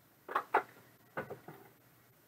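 Short clicks and clacks of trading cards and hard plastic card cases being handled and set down on a table: a quick sharp pair, then three softer ones about a second in.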